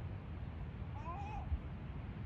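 A gull gives one short, wavering, mewing cry about a second in, over a steady low rumble of wind buffeting the microphone.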